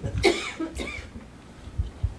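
A person coughing: two short coughs, the first near the start and the second just under a second in.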